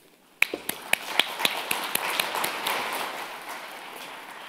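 Audience applauding in a hall, starting suddenly about half a second in with sharp separate claps that merge into steady applause and then slowly fade.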